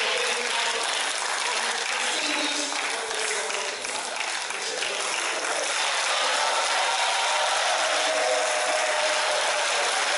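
Audience applauding, with voices in the crowd rising near the end.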